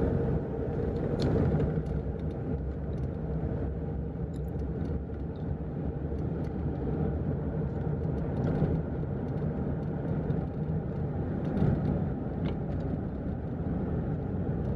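Inside a moving car's cabin: a steady low rumble of the car driving in city traffic, with a few faint clicks.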